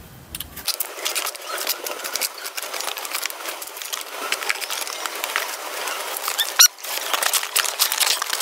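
Knife cutting the packing tape on a cardboard box, a continuous run of scratchy scraping and small clicks, with a brief high squeak about six and a half seconds in; near the end the cardboard flaps are pulled open.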